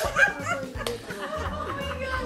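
Women laughing, loudest in the first half second and fading, over background music with a steady low bass.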